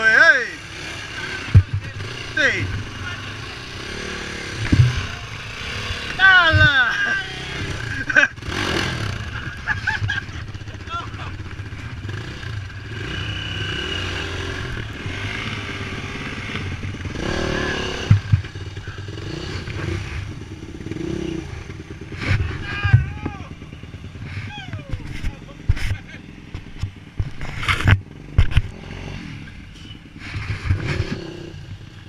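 Enduro dirt-bike engines running and revving in short bursts on a rough trail, pitch rising and falling with the throttle, with several sharp knocks and clatter as the bikes bang over rocks and ruts.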